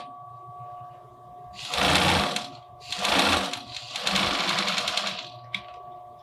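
Pfaff sewing machine stitching a zigzag hem in three short runs. The first starts about a second and a half in, with brief pauses between them.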